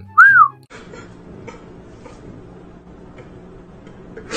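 A single short whistle about a quarter-second in, rising and then falling in pitch in one arch over less than half a second. Faint steady background hiss follows for the rest.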